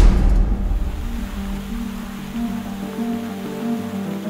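Large steel drum imploding under atmospheric pressure, with water spraying out of it: a loud rushing noise that is loudest at the start and fades over the first second or so. Background music with sustained tones plays underneath.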